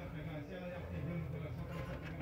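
A faint voice in the background over low room tone.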